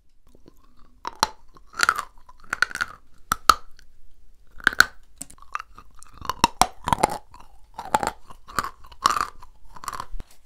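Close-miked chewing of a mouthful of edible chalk candy: irregular chews about twice a second, starting about a second in, some with sharp clicks.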